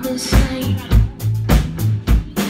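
Live band groove: a Fodera electric bass playing held low notes over a drum kit's repeated kick and snare hits, several strokes a second.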